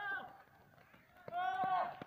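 Shouted calls from a man: a short shout ending just after the start and a longer, drawn-out shout about a second and a half in.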